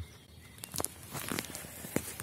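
Faint rustling with a few soft scattered clicks: handling noise from the hand-held camera being moved about, with footsteps on soil.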